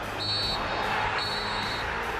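Referee's whistle blown twice, two short high blasts a little under a second apart over crowd noise: the final whistle ending the match.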